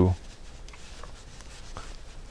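Faint scratching and a few soft ticks of a metal crochet hook catching and pulling chunky acrylic yarn through stitches.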